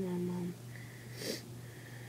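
A person's wordless vocal hum, held on one pitch for about half a second, followed a moment later by a short breathy intake through the nose.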